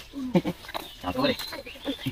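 A person's voice: short, low bits of murmured speech or vocal sounds, broken by brief pauses.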